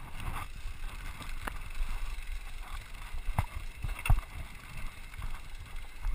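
Scott Scale RC 29 carbon hardtail mountain bike rolling down a rough dirt forest trail: a low rumble of tyres and trail noise with light rattling from the bike. Two sharp knocks come about three and a half and four seconds in, the second the loudest.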